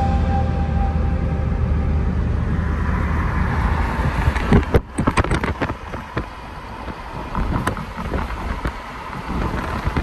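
Steady low road and engine rumble of a moving car heard from inside it. About halfway through it drops off abruptly after a few clicks, leaving quieter, gusting wind noise on the microphone.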